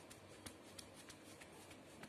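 Faint scratchy rubbing with small irregular clicks, a few a second: a damp sponge pressed and rubbed over a transfer sheet's paper backing on jute fabric, wetting it so the print will release.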